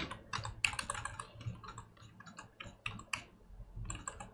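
Computer keyboard being typed on: an irregular run of short key clicks, several a second.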